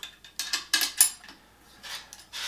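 A few short metallic clicks and scrapes from hand-working an AR-15's bolt and charging handle while a no-go headspace gauge goes into the chamber. The loudest click comes about a second in.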